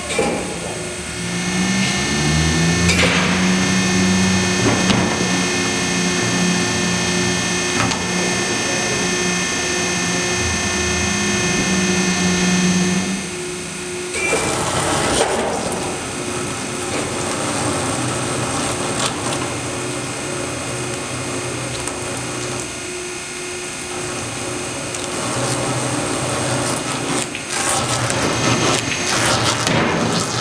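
Tire-cutting machine running as it turns a large foam-filled loader tire against its cutter. Its motor hum rises in pitch as it starts about a second in, then holds steady. About halfway through, the hum drops away, leaving a lower running sound with scraping and knocks.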